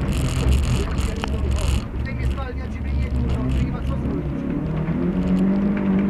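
Rally car engine heard from inside the cabin while driving on a loose dirt track. For the first two seconds a loud rushing noise from the tyres on the dirt rides over the engine, and from about five seconds in the engine note climbs as the car accelerates.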